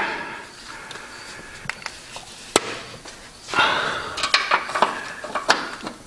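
Sharp knocks and clicks under a car as body-mount bushings and their hardware are worked by hand while the body is jacked off the frame: one loud knock about two and a half seconds in, then a stretch of scraping with several clicks in the second half.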